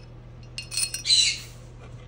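A few light metallic clinks, then a short, loud scraping rattle about a second in: a socket head cap screw being dropped down through the bore in the top of a metal fixture upright.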